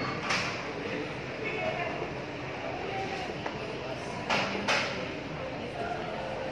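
Shopping-mall ambience: a steady background wash with indistinct voices, broken by a sharp knock just after the start and two more close together past four seconds in.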